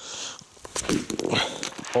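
Boots stepping on thick frozen pond ice, a few short knocks and scrapes from about half a second in.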